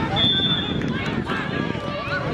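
Players' voices shouting on an outdoor football pitch, with a short, thin, high whistle tone near the start and scattered knocks of play.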